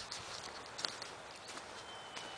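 A few footsteps on muddy ground, with scattered light clicks over a faint outdoor hiss.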